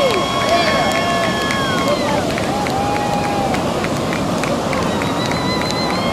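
Ocean surf washing in, with people's voices and cheering over it. A long, steady high tone is held through the first two seconds, then stops.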